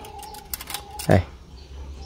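Mostly speech: one short spoken word a little after a second in, over a faint steady hum. A few faint clicks come just before it.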